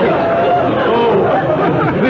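Studio audience laughing, a dense wash of many voices with bits of talk through it, on an old radio broadcast transcription.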